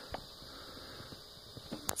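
Quiet room tone: a faint steady hiss with a soft click just after the start.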